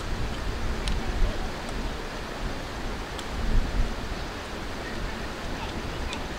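Outdoor ambience: a steady hiss under an uneven low rumble typical of wind buffeting the microphone, with a few faint clicks.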